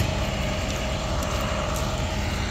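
Flatbed tow truck's engine idling steadily, with a thin steady hum above the low engine sound.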